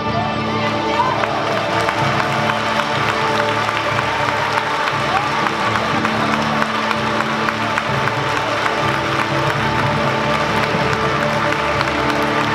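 Large youth string orchestra, many violins among them, bowing and holding sustained notes together at a steady, loud level.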